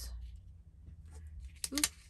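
Low steady room hum with faint paper sounds as a sticker is pressed down onto a planner page by hand. A woman's voice comes back in near the end.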